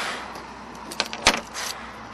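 Rescue gear being handled around a spinal board's head blocks: a rustle, then two sharp clicks a little after a second in, and a brief scratchy rustle after them.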